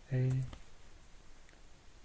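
A short spoken syllable, then quiet room tone with a faint computer mouse click about one and a half seconds in.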